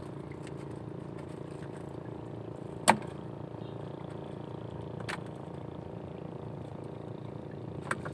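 Small boat engine idling steadily, with one sharp knock about three seconds in and a softer one about two seconds later.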